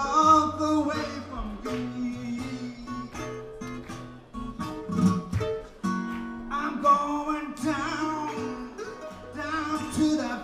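Acoustic guitar and mandolin playing a blues tune together live, plucked notes and strummed chords over a steady rhythm.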